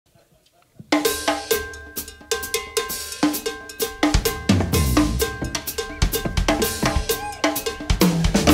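Live jazz trio of keyboard, drum kit and electric bass starting a tune: a quick, even run of short, sharply struck pitched notes begins about a second in. A low bass line joins about halfway through.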